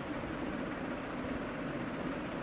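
Steady low hum of background room noise with no distinct events.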